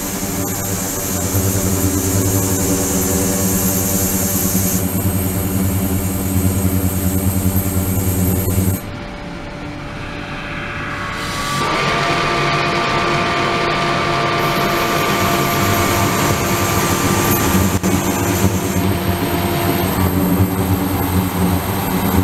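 Steady machine drone from an ultrasonic tank in operation, with water circulating through it. About nine seconds in the low hum drops away; from about twelve seconds two steady higher tones sound until about twenty seconds, over a steady hiss.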